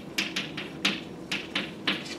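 Chalk writing on a blackboard: a series of about six short, sharp taps and scrapes as numbers are written.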